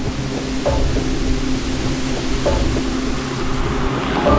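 Cinematic background music: sustained low tones under a wash of noise, with a light accent about two-thirds of a second in and another about two and a half seconds in.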